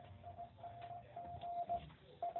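Morse code tone: one steady pitch keyed on and off in an irregular run of short and longer beeps, played faintly in a submarine's radio room.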